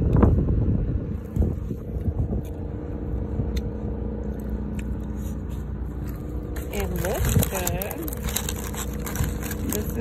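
A plastic fork and a styrofoam takeout box being handled, with scraping and paper-bag rustling that gets busier from about six and a half seconds in. Underneath there is a steady low hum, with faint voices.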